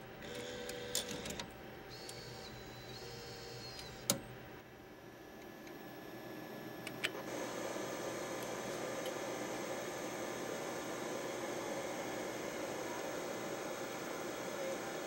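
Sony DSR-1500A DVCAM deck's tape transport whirring in short motor runs with small clicks as a cassette loads, then a sharp click about four seconds in. From about seven seconds a steady hiss from the tape's playback takes over.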